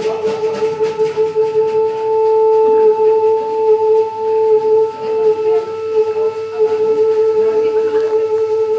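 Live jazz keyboard holding one long, steady, slightly wavering note, with drum cymbal strokes fading out in the first second or two.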